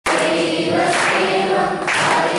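A group of voices singing together, holding long notes.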